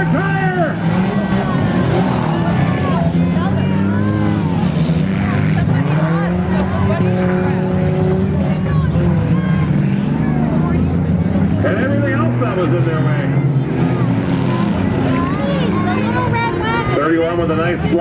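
Engines of several demolition derby cars racing around a dirt track, a steady low drone throughout, with nearby voices talking over it.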